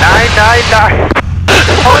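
Robin 2160's four-cylinder Lycoming engine droning steadily, heard inside the cockpit under radio and intercom speech.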